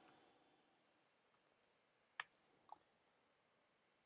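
Near silence broken by three faint, short clicks of computer keys being typed, the loudest a little past the middle.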